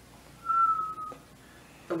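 A single short whistled note, held for under a second and falling slightly in pitch.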